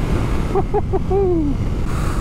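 Ducati Multistrada V4S motorcycle riding at road speed: a steady wind and engine rumble. A brief wordless voice sound from the rider comes about half a second in and falls in pitch just after the middle.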